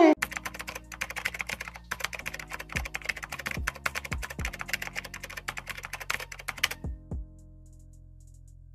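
Fast computer-keyboard typing clicks, used as the sound of on-screen text being typed out, stopping about two-thirds of a second before the end of the typed text's last second. Soft background music with low sustained notes and a few low falling thuds runs underneath.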